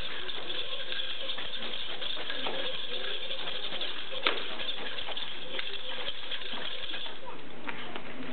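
Nunchaku being swung, with scattered faint clicks and clinks of the chain and handles over a steady background hiss, and one sharper clack about four seconds in.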